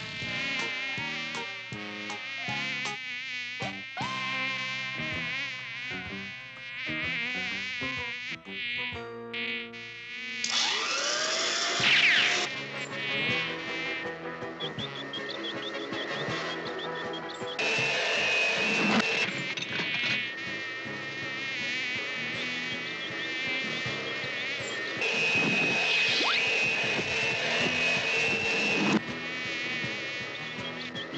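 Cartoon housefly buzz, a wavering drone that keeps coming and going, over background music. About 11 s in there is a loud sweeping sound, and twice, about 17 and 25 s in, a steadier hiss with a held whine joins for a few seconds.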